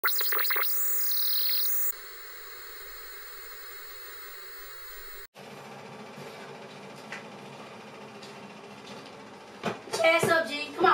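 Television static: a hiss with warbling, sweeping electronic glitch tones for the first two seconds, then a steady hiss that cuts off suddenly about five seconds in. A fainter, even hiss follows.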